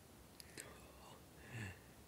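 A soft whispered voice, mostly near silence, with a faint click about half a second in and a brief low voiced murmur about a second and a half in.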